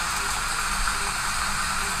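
Garden spray wand misting water over a tray of potting medium: a steady hiss of fine spray.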